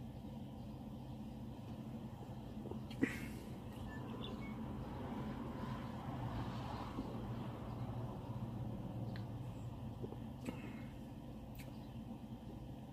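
Steady low hum of an idling vehicle, heard from inside its cabin, with one sharp click about three seconds in.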